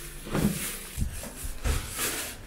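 Plastic shopping bags rustling and crinkling as they are handled, with three soft knocks spread through it.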